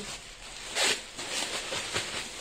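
Clear plastic garment bag being handled and pulled open, with one short sharp swish about a second in and light crinkling around it.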